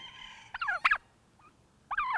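Domestic turkey tom gobbling into a microphone held close to it: a short rapid warbling gobble about half a second in, then a second, louder gobble near the end.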